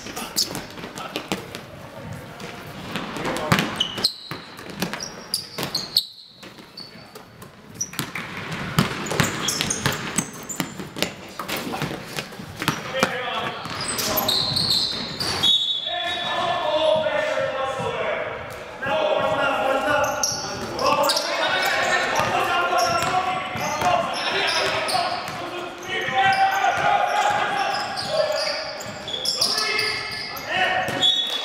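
A basketball bouncing on a hardwood gym floor, sharp knocks again and again, echoing in a large hall. From about halfway through, voices call out over the bounces.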